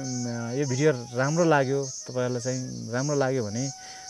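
A man talking, over a high-pitched insect chorus that swells and fades in a steady rhythm, a little under twice a second.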